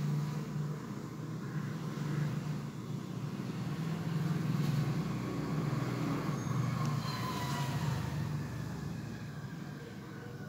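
Steady low motor rumble, like background traffic or an engine, swelling in the middle, with a faint falling whine near the end.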